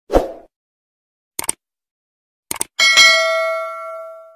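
Subscribe-button animation sound effect: a short thump, two quick pairs of clicks, then a bell ding about three seconds in that rings on and fades away.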